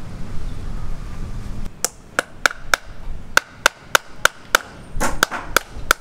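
Hammer blows, a run of about a dozen sharp strikes at roughly three a second, each with a short ringing note. They start about two seconds in.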